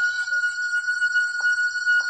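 Steady high electronic tone held unchanging, with fainter higher tones over it, as in a film's synthesized background score; a single soft knock sounds about one and a half seconds in.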